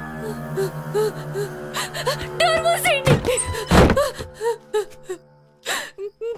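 Low, sustained horror-film music drone under a woman's frightened whimpering and gasping, with a wavering high cry and two loud breathy bursts in the middle; the drone fades away before the end.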